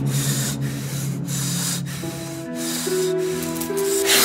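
Film background score: a hissing, swishing texture pulsing about every 0.6 s over a held low synth note, which gives way about two and a half seconds in to a chord of several sustained notes.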